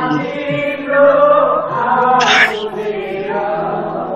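Two men singing a Nepali worship song in sustained, pitch-bending phrases, with a strummed acoustic guitar underneath. The sound comes through a Zoom call's audio and has little top end.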